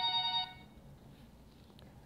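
Mobile phone ringtone, a steady electronic tone with several pitches sounding together, cutting off about half a second in as the call is answered.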